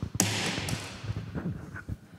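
Handling noise from a live handheld microphone as it is passed from one hand to another: a sharp knock, then about a second of rubbing and rustling that fades, with a few softer knocks after.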